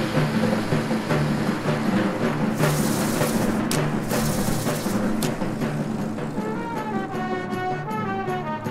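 Marching band playing: sustained low brass and timpani, with two sharp percussion hits about four and five seconds in. A quicker, higher melodic line enters near the end.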